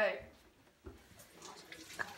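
Speech: a spoken word trails off at the start, then faint voices in a small room, with a soft thump a little under a second in.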